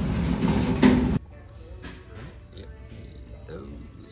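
A steel flatbed lumber cart rolling and rattling over a concrete floor, which cuts off abruptly about a second in; after that, quiet store room sound with faint music and voices in the background.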